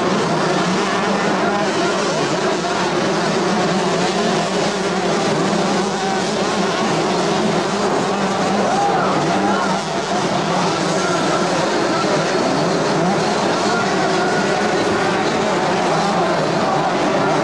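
Several two-stroke motocross bikes racing on a supercross track, their engines revving and falling over one another in a steady, continuous din.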